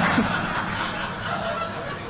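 Audience laughing, with many voices at once, the laughter tapering off.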